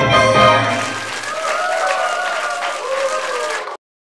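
The backing music's final chord fades out within the first second, and audience applause follows, with a voice heard over the clapping. The sound cuts off suddenly near the end.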